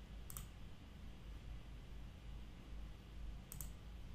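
Two computer mouse clicks, one just after the start and one near the end, over a faint low hum.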